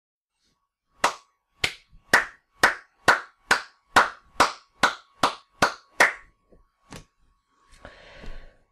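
A person clapping hands about a dozen times, roughly two claps a second and quickening slightly, then one softer clap.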